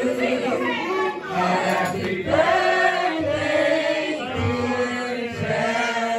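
A group of men and women singing together, with long held notes that slide between pitches.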